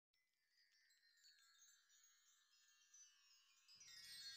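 Faint, high chime-like tones fading in, with more tones and a low layer joining just before the end: the opening of a background music track.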